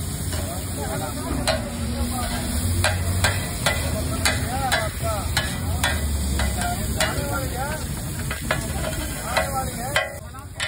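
An egg-and-onion omelette sizzling on a large flat iron griddle (tawa) while a steel spatula chops and scrapes it against the metal. The spatula hits come in a quick run, about one to two a second, over a steady sizzle.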